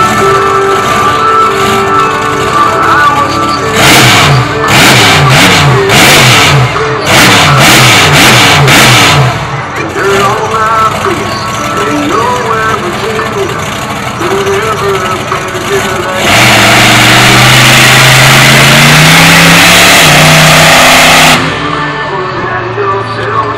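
Monster truck engines revving in a quick series of bursts, pitch swinging up and down. Later, one truck runs at full throttle for about five seconds, pitch climbing steadily, then cuts off abruptly near the end.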